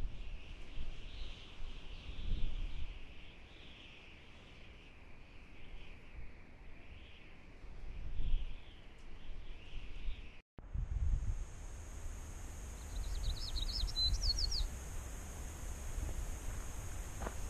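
Wind buffeting the microphone in gusts. After a brief dropout about ten seconds in, the wind eases and a small songbird gives a short, rapid trill.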